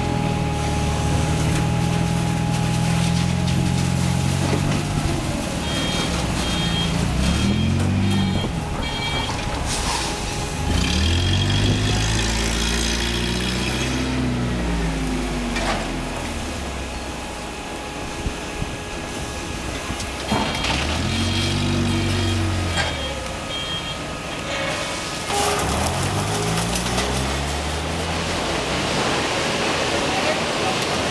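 A vehicle engine running and revving up and back down several times, with short runs of high repeated beeping like a reversing alarm.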